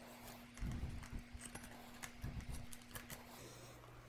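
Faint knocks and taps from hands fitting a 1-by-30 surface conditioning belt onto the wheels of a pipe polishing attachment, with the grinder switched off, over a faint steady low hum.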